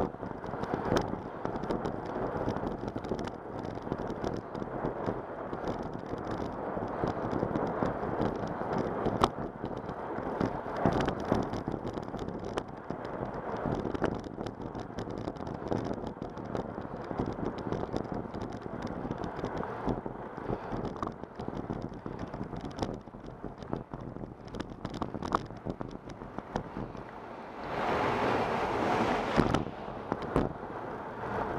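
Wind buffeting the microphone of a camera on a moving bicycle, a steady rough rush with scattered clicks and rattles, growing louder for a couple of seconds near the end.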